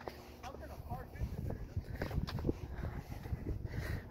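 Faint, distant talking over a low, steady rumble, with a few soft knocks.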